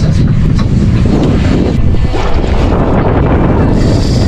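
Strong wind buffeting the microphone over the wash of open sea around a drifting boat, with a couple of light clicks in the first second.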